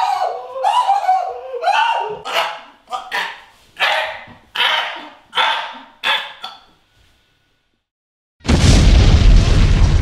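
A man letting out short, repeated yells, about one every 0.7 s, that grow hoarser and noisier as they go on, then break off. After a short silence a loud explosion sound effect booms about eight and a half seconds in and dies away.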